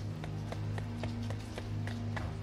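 Low, sustained background music drone with rapid running footsteps as a sound effect, about four steps a second.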